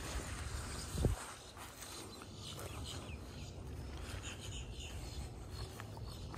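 Faint outdoor ambience: a steady low rumble on the microphone, a single soft thump about a second in, and a few faint bird chirps.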